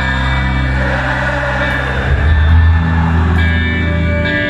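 Live rock band playing sustained chords over held bass notes, heard loud from within the audience in a large hall; the bass note shifts about halfway through.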